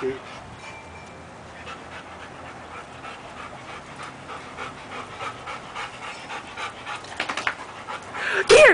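A dog panting after rough play, quick rhythmic breaths.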